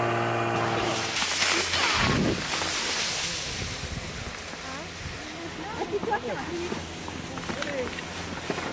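A steady machine hum lasts about a second and cuts off. It gives way to the rush of skis sliding on snow with wind on the microphone, loudest early on. Faint children's voices call out near the end.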